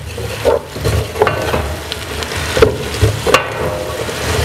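A spatula stirring chopped vegetables frying in oil in an aluminium pot, scraping and tapping against the metal every second or so over a steady sizzle.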